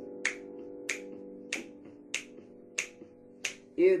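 Finger snaps keeping time, six evenly spaced about 0.6 s apart, over a held piano chord that slowly fades. Singing and piano come back in right at the end.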